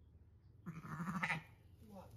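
A ewe in labour bleats once: a loud, wavering bleat lasting under a second, starting a little over half a second in.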